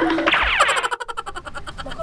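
Cartoon-style comedy sound effect marking a scene change: a quick falling electronic glide, then a fast, even run of ticks.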